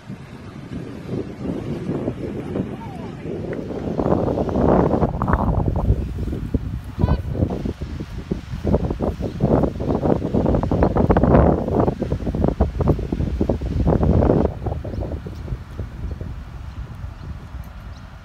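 Indistinct voices of people close by, mixed with wind rumbling on the microphone, louder through the middle of the stretch.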